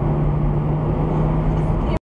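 Road and engine noise inside a car cruising on a highway, a steady low drone over tyre rumble, cut off abruptly at the very end.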